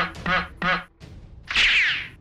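Cartoon sound effects: three quick duck-like quacks, then about a second and a half in a loud whoosh as the arrow flies.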